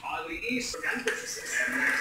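A voice speaking softly in short, broken snatches.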